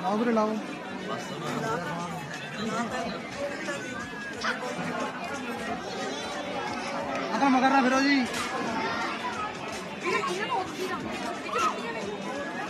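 Several people talking over one another: a steady background of overlapping chatter, with no single voice standing out.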